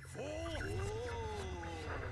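A cartoon cat-demon character's long, drawn-out "oooooah" vocalization from the animated show, wavering up and down in pitch, over a steady low rumble in the soundtrack.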